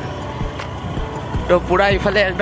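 Engine and road rumble of a moving vehicle, heard from on board. A voice comes in near the end.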